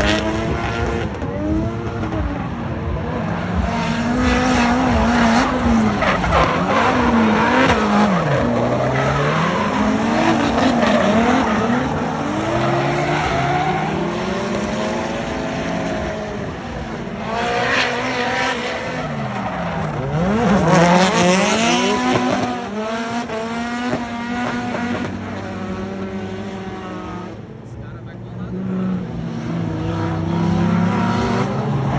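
Drift cars sliding through a corner, their engines revving up and down again and again as the throttle is worked, with tyre squeal from the sliding tyres. The engine note falls sharply twice, about eight and twenty seconds in, and the sound eases briefly near the end before the next car comes through.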